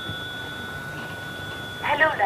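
Black rotary-dial telephone giving a steady, high two-pitched tone as its handset is lifted. The tone stops near the end, when a voice begins.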